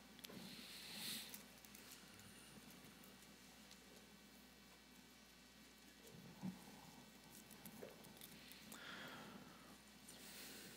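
Near silence: room tone with faint rustles and a soft knock about six and a half seconds in, from Bible pages being leafed through at a pulpit while the verse is looked up.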